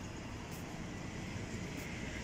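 Steady city street noise, mainly a low rumble of road traffic.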